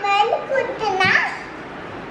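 A young girl talking in a high-pitched voice, with speech in about the first second and a half and a short pause after.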